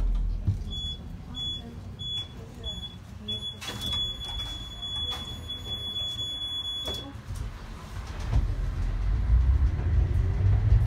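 Tram door-closing warning signal: a high beep sounding several times, then held for a few seconds, cut off with a knock as the folding doors shut. Near the end the tram's rumble rises as it moves off.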